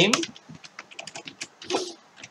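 Computer keyboard being typed on: a quick, irregular run of keystrokes as a line of code is entered.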